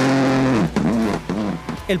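Rally car engine held at high revs with gravel spraying under the tyres, then the engine note rising and falling several times in quick succession.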